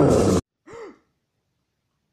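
Cartoon growl from Disney's Pete, harsh, with a falling pitch, cutting off about half a second in. A brief gasp-like voice sound follows shortly after.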